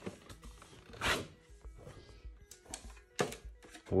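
A cardboard gift box being handled and opened: short scraping rustles, the loudest about a second in, and a few light knocks, over faint background music.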